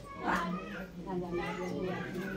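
Women's voices talking over one another, with one high-pitched voice rising and falling about a third of a second in.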